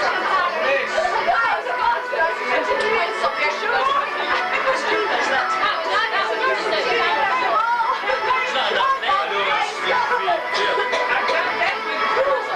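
A roomful of people talking over one another: steady, overlapping party chatter with no single voice standing out.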